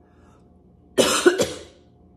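A woman with a head cold coughing twice in quick succession, about a second in.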